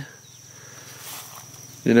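A steady high-pitched insect trill over a low, even hum.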